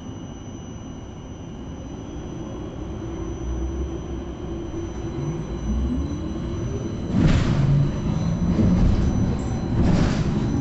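MBTA Silver Line bus heard from inside the cabin, its drive running with a steady low rumble, then a rising whine and growing louder from about five seconds in as the bus picks up speed. Two loud short rattling jolts come, one a little after seven seconds and one near the end.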